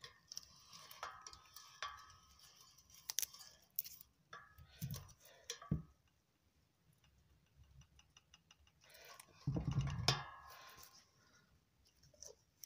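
Light metal clicks and scrapes of an adjustable peg spanner turning a fine-threaded locking ring into a BSA Bantam D7 rear wheel hub. The clicks come in scattered bursts through the first half, then stop, and a louder clatter of handling comes near the end.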